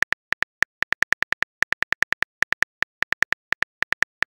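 Simulated phone keyboard clicks from a texting-story app, one short tap per letter as a message is typed: a quick, uneven run of identical clicks, about seven a second.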